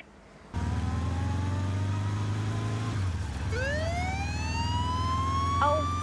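A vehicle engine running steadily from about half a second in; about three and a half seconds in a police siren starts up, its wail rising in pitch and holding high.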